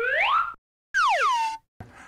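An edited-in comedy sound effect: a whistle-like tone slides up for about half a second, cuts to dead silence, then slides back down, ending just over halfway through.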